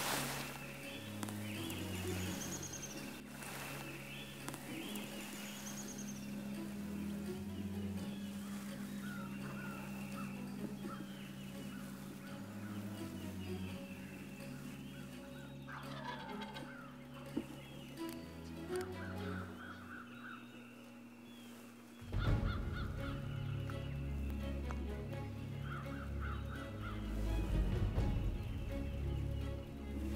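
Wild turkeys gobbling at intervals, over a low background music bed that swells about two-thirds of the way through.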